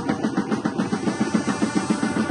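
Drums beating a fast, even rhythm of short, repeated strokes.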